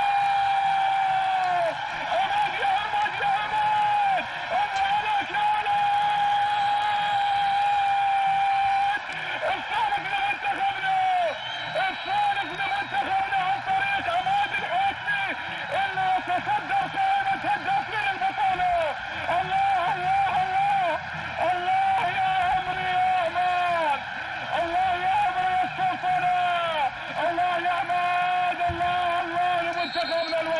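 A football TV commentator's long, drawn-out goal shout, held on one note for about nine seconds, followed by a string of short, excited cries that swoop up and down in pitch.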